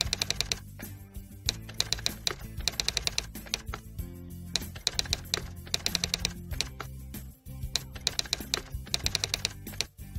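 Typewriter-style typing sound effect: short runs of rapid clicks, repeated several times with brief gaps, as on-screen text is typed out. A steady background music bed plays underneath.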